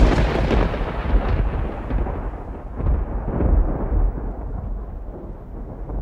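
Heavy rain falling, with a deep rumble underneath that swells and fades.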